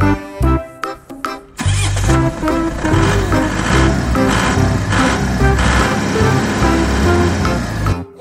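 Children's background music with a car engine sound effect laid over it. The engine sound starts about one and a half seconds in, runs loud and steady, and cuts off just before the end.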